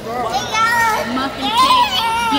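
Young children's high-pitched voices at play, with calls that rise in pitch, loudest a little past halfway.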